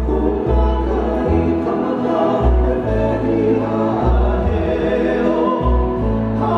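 Hawaiian song played live on two acoustic guitars and an upright bass, with the bass notes moving every half second or so under sung vocals.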